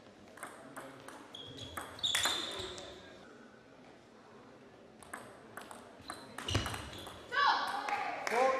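Table tennis rallies: the ball clicks sharply off bats and table a few times a second, and the hits ring in a large hall. Near the end a voice shouts out.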